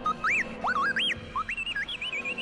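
R2-D2 astromech droid beeping and whistling: a quick run of short chirps that swoop up and down in pitch.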